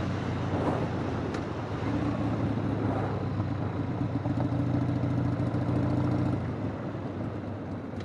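1999 Harley-Davidson Sportster 1200 XLH, its air-cooled Evolution V-twin on the stock exhaust, running at a steady cruise, with road and wind noise. The engine note drops slightly near the end.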